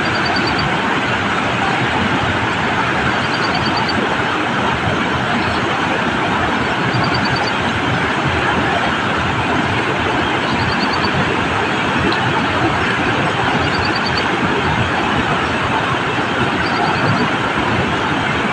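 Water pouring through two opened dam spillway gates and churning in the river below: a loud, steady roar.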